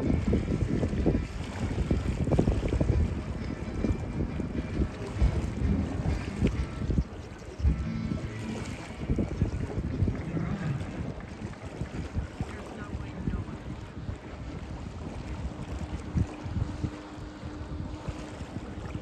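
Wind buffeting the microphone in gusts, over the run of a Jetfly electric jetboard skimming across the water. A faint steady hum comes in during the last few seconds as the board draws closer.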